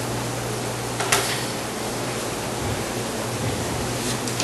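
Classroom room tone: a steady hiss with a low electrical hum underneath, and a single sharp click about a second in.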